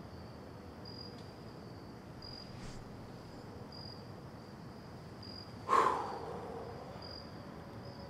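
Crickets chirping steadily in a high, pulsing trill. A little before the end there is one short, loud sound that starts sharply and falls in pitch.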